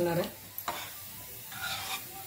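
Water poured from a steel bowl into a pan of simmering colocasia-leaf curry, then a steel ladle stirring the thin curry, a soft, even wet noise that grows brighter near the end.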